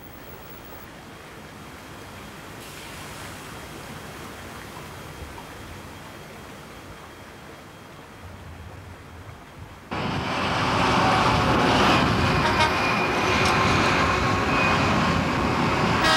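A faint, steady rush of flowing river water. About ten seconds in, it cuts suddenly to the much louder, continuous noise of large diesel mine haul trucks driving.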